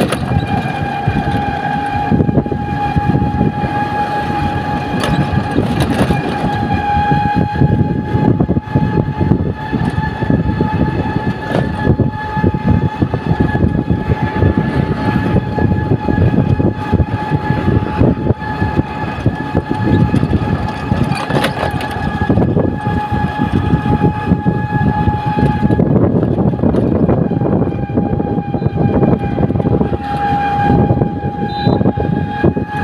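Running noise of a moving vehicle heard from on board: a rough, uneven rumble with a steady high-pitched whine held throughout.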